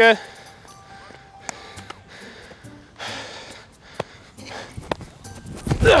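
A few sharp pops of a baseball smacking into a leather glove during a game of catch, over faint background music.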